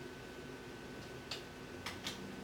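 Quiet room tone with a faint steady hum, and two faint short clicks about a second and a half in.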